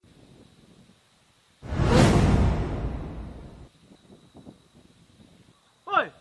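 A whoosh transition sound effect that comes in suddenly about a second and a half in, peaks at once and fades away over about two seconds.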